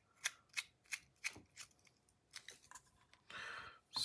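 A run of small, sharp metallic clicks, about three a second at first and then sparser, from a titanium folding knife being worked by hand as it is checked after reassembly on new bearings. A short soft hiss near the end.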